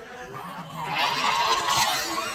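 A young person's rough, strained shriek during a neck-grabbing play fight, swelling up about a second in, with a honk-like quality.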